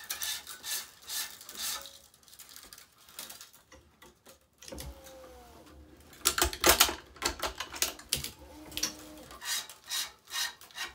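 Tennis string being woven by hand through the main strings of a racquet on a stringing machine: irregular light clicks, taps and rubbing of string on string, with a couple of brief squeaks. The loudest burst of clicks comes about six to seven seconds in.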